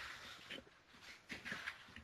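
Quiet room tone with a few faint soft clicks and rustles, a handful of short ticks scattered across the two seconds.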